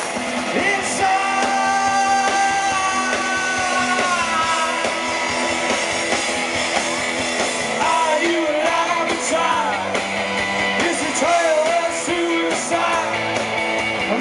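Live rock band playing, with electric guitars and drums. Long held notes bend in pitch, one sliding down about four seconds in.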